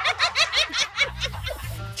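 Women laughing in a quick run of short ha-ha bursts over background music; the laughter stops about a second in, leaving the music.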